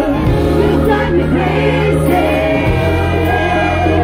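Live pop band and male singer performing through a concert PA, heard from the crowd: the voice sings over held bass notes and sustained chords.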